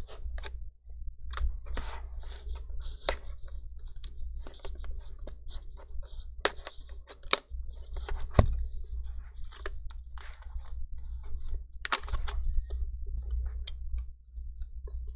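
Plastic prying tool clicking and scraping against the metal Wi-Fi antenna bracket of a MacBook Air as the bracket is prised and wiggled loose from its clips: an irregular string of small clicks and scratches, with the sharpest snaps about seven, eight and a half and twelve seconds in.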